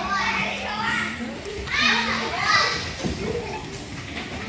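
Young children playing and calling out in an indoor soft play area, their high-pitched voices overlapping over a steady low hum.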